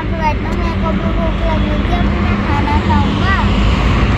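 Steady low rumble of road traffic on the highway alongside, with a child's voice heard in short snatches over it.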